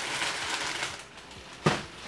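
Rustling and handling noise as items are reached for and picked up, then a single sharp knock near the end, the loudest sound in the stretch.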